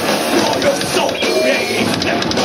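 Heavy metal band playing live and loud: distorted electric guitars and drums in a dense, unbroken wall of sound.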